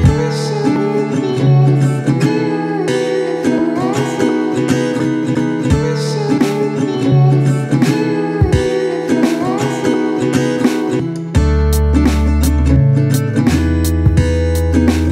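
Background music led by guitar, with a steady rhythm; a deep bass part comes in about eleven seconds in.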